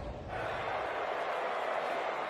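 Steady crowd murmur of a large audience, starting a moment in and holding even.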